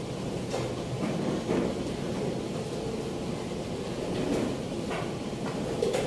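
Steady low background noise of a busy indoor hall, with a few faint short knocks and clicks scattered through it.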